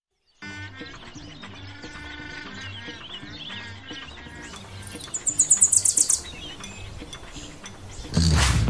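Small birds chirping over a soft, steady music bed, starting about half a second in after a brief silence. About five seconds in, a rapid high-pitched trill of about eight notes lasts roughly a second and is the loudest sound.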